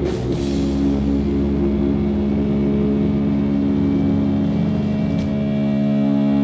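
Live heavy rock band holding one sustained chord on electric guitars and bass, ringing steadily for several seconds, with only a couple of cymbal or drum hits, one at the start and one about five seconds in.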